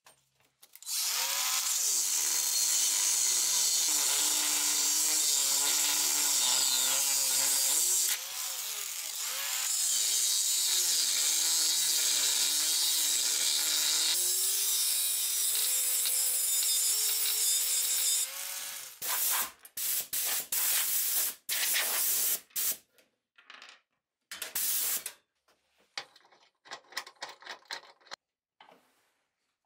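Cordless angle grinder grinding metal. Its motor pitch sags and recovers under load, with a brief dip near the middle. After that come several short bursts, then it goes quiet.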